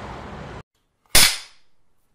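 Film clapperboard snapping shut: one sharp, loud clap about a second in, with a short fading tail, after the music cuts off.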